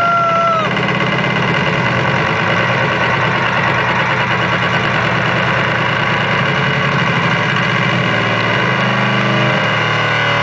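Loud electronic dance music on a club sound system, in a dense, droning synth passage with a steady low bass and no clear drum beat. A short whistle-like tone rises and holds briefly at the very start.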